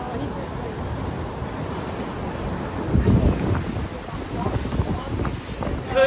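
Wind buffeting the microphone over the sound of surf breaking against jetty rocks, with a strong gust about halfway through.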